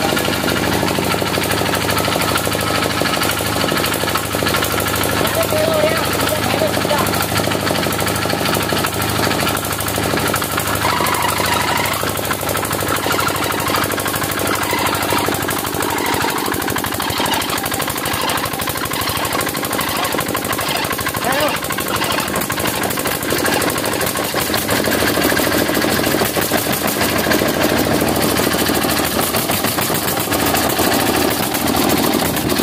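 A small 4 hp diesel engine running with a rapid knocking beat while it drives a 22 hp Eicher diesel engine round through a V-belt, cranking the bigger engine to get it started.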